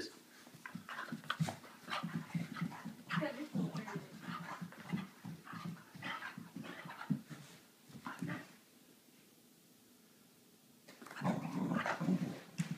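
A dog growling in short, broken spells as she spins chasing her own tail. It goes quiet about two thirds of the way through, then starts again near the end.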